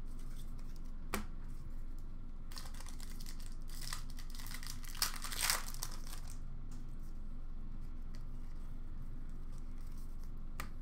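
Hockey card pack wrapper being torn open and crinkled by hand. There is a sharp click about a second in, then a burst of crinkling and tearing from about two and a half to six seconds, loudest near the end of it.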